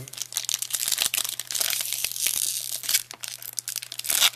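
Foil wrapper of a Pokémon Gym Challenge booster pack crinkling and tearing as it is opened by hand: a dense run of crackles that eases briefly shortly before the end.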